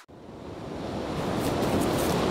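Rain falling steadily, a dense even hiss of drops that fades up over about the first second.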